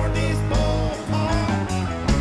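Live band playing: guitars over bass and drums, loud and continuous.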